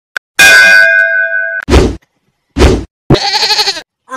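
Intro sound effects: a metallic clang that rings on with steady tones for about a second, then two short thuds, then a short wavering pitched cry near the end.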